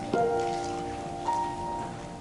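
Slow instrumental piano music. A chord is struck just after the start and a higher note comes about a second later, both held and ringing.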